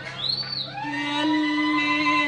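Arabic orchestra playing an instrumental passage between sung lines: a high note slides up and back down in the first half second, then the ensemble holds a long steady note.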